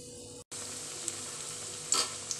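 Green gram vadas deep-frying in hot oil in a wok, a steady sizzle with a few sharp pops of spattering oil. The sizzle breaks off for an instant about half a second in, then carries on slightly louder.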